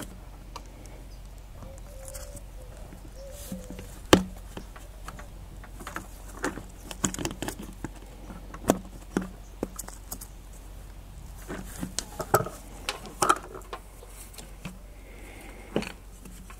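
Scattered clicks, knocks and rubbing of a plastic coolant expansion tank and its rubber hoses being handled by gloved hands as a hose is pushed onto the tank's spigot. The sharpest knock comes about four seconds in, with more clustered near the end.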